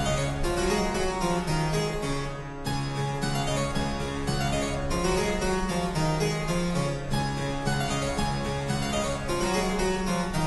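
Harpsichord playing a baroque piece: continuous plucked notes over a steady bass line.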